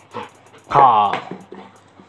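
A Labrador retriever gives one short, loud vocal sound, like a bark falling in pitch, about three-quarters of a second in, with a softer sound just before it.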